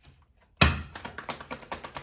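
A thump about half a second in, then a deck of tarot cards being shuffled by hand: a quick run of light card taps, about seven a second.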